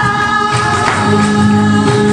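Flamenco music with singing and a steady beat.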